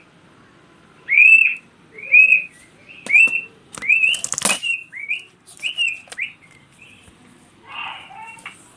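A small bird chirping again and again, about ten short chirps that rise and fall in pitch, with a few sharp clicks and a brief rattling flutter about four seconds in.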